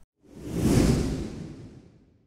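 A whoosh transition sound effect: one swell of deep rumble and airy hiss that rises over about half a second and fades away over the next second.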